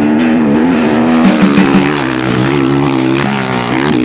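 A KTM 500 EXC-F dirt bike's single-cylinder four-stroke engine running under way, its pitch wavering up and down with the throttle.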